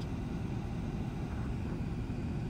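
Steady low rumble of a car running, heard from inside its cabin.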